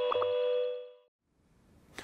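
The end of a short logo ident jingle: a held electronic chord of steady tones, with two quick clicks just after it begins, fading away within the first second, then silence.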